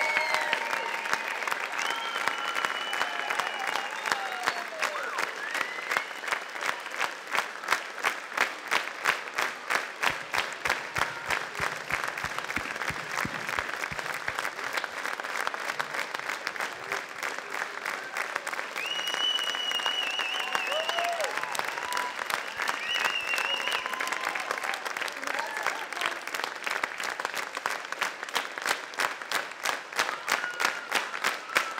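A large audience applauding, the clapping falling into a regular rhythm for several seconds in the middle and again near the end, with scattered shouts and whistles over it.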